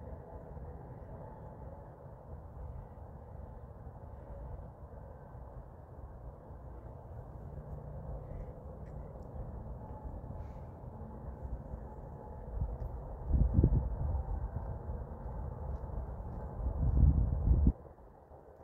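Outdoor field noise: a low steady rumble, with two louder bursts of low buffeting about two-thirds through and again near the end, typical of wind on the microphone.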